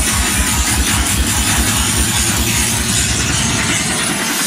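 Loud electronic bass music from a DJ set: a fast, even pulsing bass, several beats a second, under a bright hiss.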